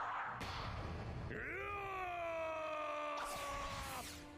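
A man's long, drawn-out shout from an anime battle scene's soundtrack, beginning about a second in and sinking slowly in pitch, after a second of noisy rumble.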